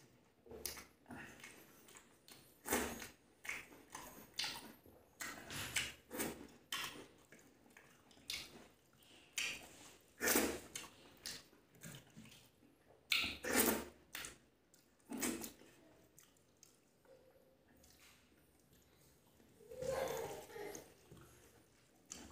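Close-miked eating sounds of a man eating rice and curry with his hand: irregular wet chewing and lip smacks, with a longer, louder mouth sound near the end.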